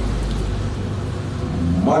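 A steady low rumble fills a pause in a man's speech, and his voice starts again near the end.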